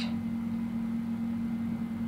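Steady low electrical hum with a faint hiss underneath.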